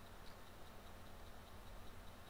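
Faint steady low hum and hiss of background noise, with a soft high ticking repeating about five times a second.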